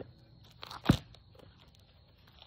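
A basketball bouncing once, loudly, on a concrete driveway about a second in.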